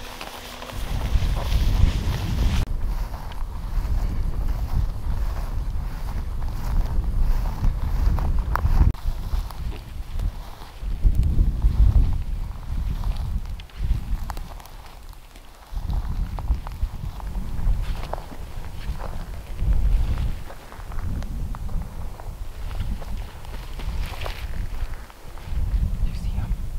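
Wind buffeting the microphone in uneven low gusts that ease off briefly about halfway through, with footsteps and rustling through dry, tall grass.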